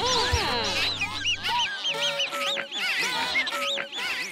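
A chorus of squeaky cartoon animal calls: many short chirps that rise and fall in pitch, overlapping each other. They sit over the held last notes of the theme tune, which stop about one and a half seconds in, and the calls carry on alone after that.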